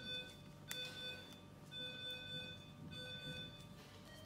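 Faint electronic alarm beeping, a steady mid-pitched tone sounding in on-off pulses about once a second, with a brief click about a second in.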